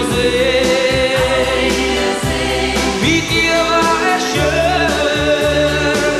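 Schlager ballad performed live: long, held sung notes with a wavering pitch over band backing with a steady beat.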